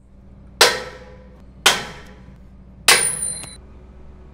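Three hammer blows on steel, each a sharp metallic clang that rings out briefly, the third ringing longest: the connecting pins of a lattice tower-crane jib section being knocked out.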